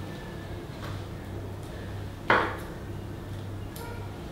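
A small glass medicine vial is handled and knocks once sharply against the tray about halfway through, with a fainter click near the end, over a low steady hum.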